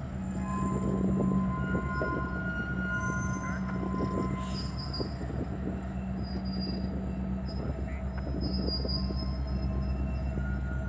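Norfolk Southern diesel locomotives of a four-unit lashup rolling slowly past, their engines running with a steady low drone. High wheel squeals come and go over it, with a couple of sharp clicks from the wheels on the rail.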